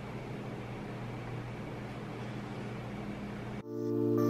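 Steady low hum with a soft hiss, like an appliance or fan running in a kitchen. About three and a half seconds in it cuts off suddenly and background music with held notes begins.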